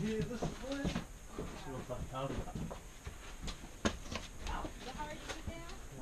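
Quieter, indistinct voices of people talking, with a few sharp clicks in between.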